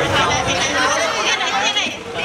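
Several people talking at once close by, their voices overlapping in chatter, in a large hall.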